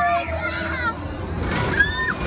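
Indistinct high children's voices calling and shouting, twice, over a steady background of crowd chatter.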